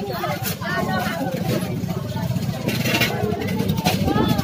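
Busy market-street ambience: people talking over a steady low rumble, with a few sharp clicks.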